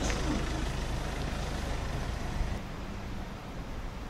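Low engine rumble of nearby street traffic, growing quieter about two and a half seconds in.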